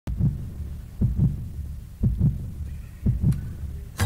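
A deep double thump, 'lub-dub' like a heartbeat, repeating about once a second, four times, as a heartbeat pulse opening a pop song.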